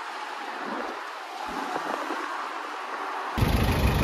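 Faint steady outdoor background noise with a couple of soft thumps, then, near the end, the loud low rumble of a hotel shuttle minibus's engine idling close by.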